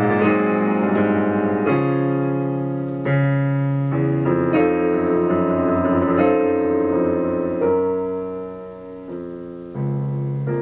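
Solo piano music: slow, sustained chords that change roughly every one and a half seconds, each dying away. The playing grows softer toward the end, then a new chord is struck.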